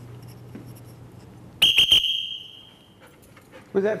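Dog training whistle blown in three short, shrill blasts, the last held for about a second: the three-blast whistle signal for 'come', calling the dog in.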